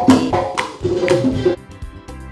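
Live band music with hand drums and percussion under pitched instrument notes. About a second and a half in, the sound drops in level and changes.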